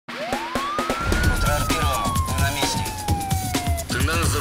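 Title-sequence music with a single siren wail: the tone rises quickly for about a second, then falls slowly and stops just before the end, over a pulsing bass beat and sharp percussive hits.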